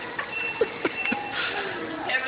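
Background noise of a store, with a thin high tone held for about a second and a few light knocks.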